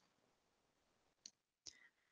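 Near silence with two faint clicks about half a second apart, a little past a second in.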